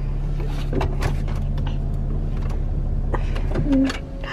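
Car engine idling with a steady low hum, under light clicks and knocks from a toddler handling the dashboard controls. Near the end the hum cuts out as the engine is switched off.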